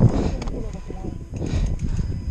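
Wind rumbling on an action camera's microphone, with a faint voice in the background.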